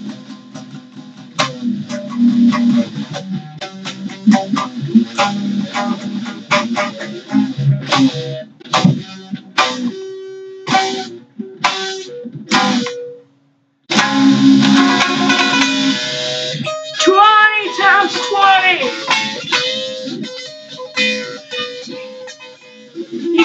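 Guitar strummed and picked in short, choppy strokes with a boy's voice singing or shouting along. The sound cuts out completely for under a second about thirteen seconds in, then comes back loud and dense.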